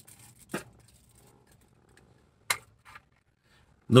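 Quiet handling of a plastic bubble-tea cup: a soft knock about half a second in, then one sharp click about two and a half seconds in and a fainter one just after.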